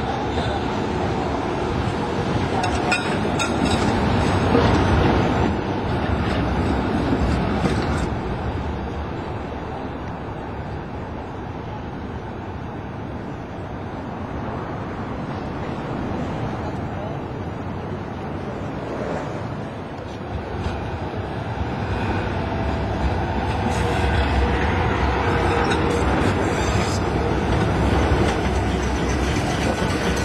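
Tram running along street rails, with a few sharp knocks from the wheels on the track. It is louder in the first few seconds and again in the last third, over general street noise.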